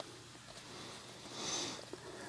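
Trading cards being flipped through by hand: a faint slide of card against card, a soft hiss that swells about one and a half seconds in.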